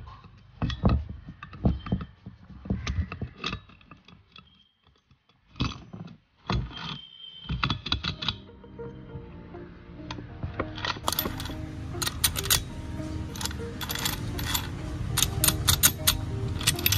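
Steel gears and shafts of a motorcycle gearbox clinking and knocking against each other and the aluminium crankcase as they are set into place, in scattered separate clicks. Background music comes in about ten seconds in, with more clinks over it.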